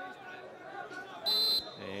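Referee's whistle: one short, shrill blast a little over a second in, calling a halt to the par terre position so the wrestlers return to their feet. Faint arena crowd murmur before it.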